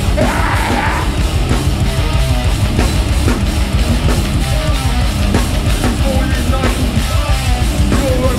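Hardcore band playing live: distorted electric guitars, bass and drums, with the vocalist yelling into the microphone in the first second.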